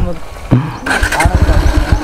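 Bajaj Pulsar NS160 single-cylinder engine turning over on its starter with a quick run of low thumps, failing to catch because the tank has run dry. A man's voice runs over it.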